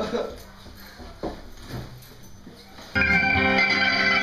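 A few faint knocks and rustles, then about three seconds in a loud guitar chord from an electric and an acoustic guitar starts abruptly and rings out steadily.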